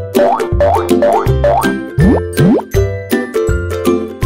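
Cheerful children's cartoon background music with a strong repeating bass. Several quick upward-sliding swoops sound in the first three seconds.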